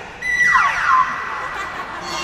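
Cartoon-style falling-pitch sound effect: several whistling tones sweep quickly down together over a steady high held tone. It starts suddenly a moment in, and the glides die away after about a second.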